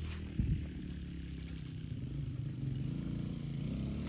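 An engine running steadily, a low even hum, with a brief click near the start.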